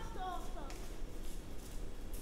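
A distant high-pitched voice calls out briefly in the first second, falling in pitch, over a steady low outdoor rumble.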